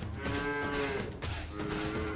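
A cow mooing twice: one call in the first second and a second starting about a second and a half in, each sliding slightly down in pitch.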